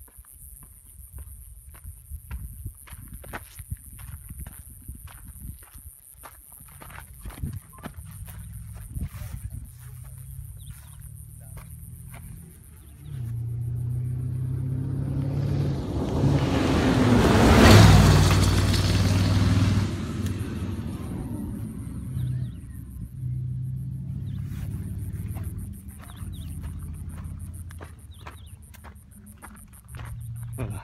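Dakar rally race truck approaching at speed on a gravel road. Its engine note grows for several seconds, peaks with a rush of tyre and gravel noise about 18 seconds in as the pitch drops on the pass, then fades away. Insects keep up a steady high buzz throughout.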